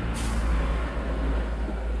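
Steady low rumble with a noisy hiss over it, and a brief higher hiss just after the start.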